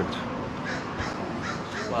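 A bird calling a few times over steady outdoor background noise.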